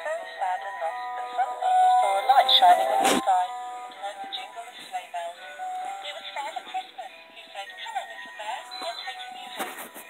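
A musical Christmas plush bear's small speaker playing a thin, tinny electronic Christmas tune with a synthetic singing voice. There is one sharp knock about three seconds in.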